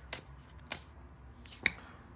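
Oracle cards being handled as a card is drawn from the deck: three short clicks of card stock, the last the loudest.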